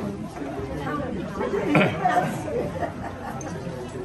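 Indistinct chatter of several people talking, with one voice coming up louder about two seconds in.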